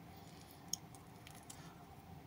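A few faint small clicks of a double-hinged toy landing-gear part being folded by hand, one sharper click about three-quarters of a second in, over quiet room tone.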